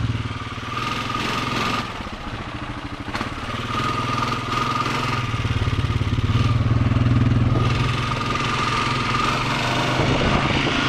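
Honda ATV engine running while riding: about two seconds in it drops to a slow, pulsing low-rpm beat, then picks up and pulls steadily, easing off a little near the end. A thin whine rides along with the engine while it pulls.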